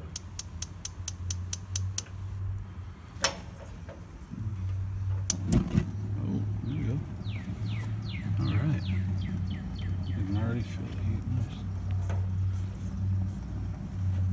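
Weber Spirit II E-210 propane grill being lit: the igniter clicks rapidly about nine times, once more a moment later, and then the burner catches and runs with a steady low hum, on its first firing.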